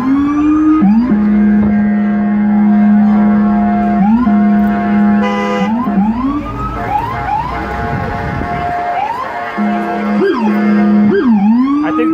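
Emergency vehicle sirens, more than one sounding at once: loud pitched tones that sweep upward and settle into long held notes, repeating every few seconds.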